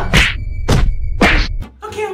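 Three swooshing hit sound effects about half a second apart, each sweeping down in pitch, with a faint steady high tone between them.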